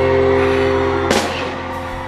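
Filipino rock band music: a held chord ringing, broken by a sharp hit about a second in, after which the held tones stop and the sound fades, like the last chord of a song.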